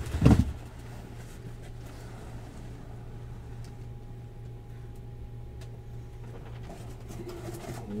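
A single heavy thump as a cardboard case is set down, then a steady low hum with a few faint clicks.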